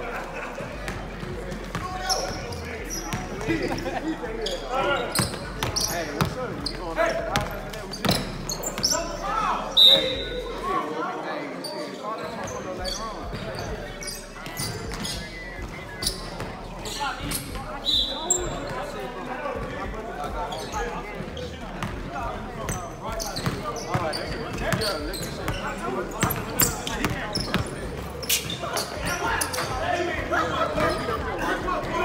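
Basketball bouncing on a hardwood gym floor during a pickup game, with repeated sharp thuds echoing in the large hall. Two short, high sneaker squeaks come about ten and eighteen seconds in, over players' voices.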